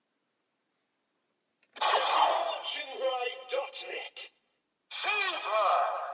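Electronic voice and sound effects from the speaker of a Kamen Rider Zero-One Shotriser toy gun, in two bursts starting about two seconds in, with warbling, swooping tones in the second burst.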